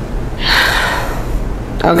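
A person's audible intake of breath, a short breathy noise about half a second in, over a steady low room hum.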